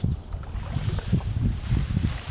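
Wind buffeting the camera's microphone: an uneven low rumble that swells and dips, with brief gusts of hiss.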